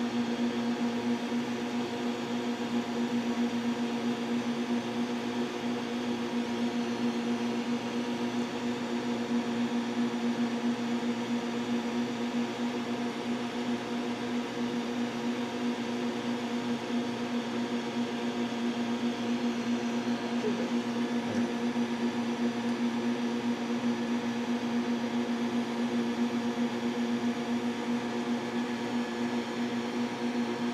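A steady machine hum, one constant low tone with its overtones over a hiss, unchanging throughout.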